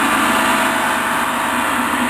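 Large Paiste gong ringing on after a single strike: a loud, steady wash of many overlapping tones that barely fades.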